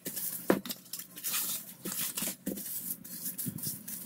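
Plastic cling wrap crinkling and rustling as it is handled and pressed over a glass mixing bowl, in irregular crackles with a sharp tick about half a second in.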